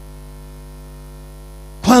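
Steady electrical mains hum in the microphone's sound system, a low buzz with many even overtones. A man's loud speech cuts in near the end.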